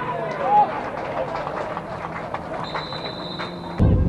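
Shouting voices of players and spectators at a football match, then a referee's whistle blown in one steady blast of just over a second near the end. The sound then cuts abruptly to loud wind noise.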